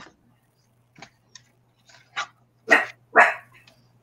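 A dog barking: a few short barks, then two louder ones near the end, irritated by a recurring beeping noise in the house.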